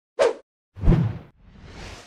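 Intro-animation sound effects: a short pop, then a whoosh with a low thud about a second in, followed by a swell that builds toward the end.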